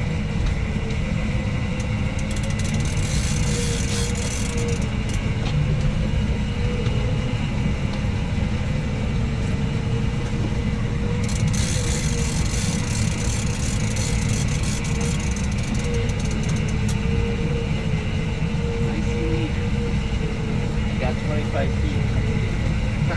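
Boat engine running steadily at trolling speed: a continuous low rumble with a steady, slightly wavering hum, and a hiss that comes and goes over it.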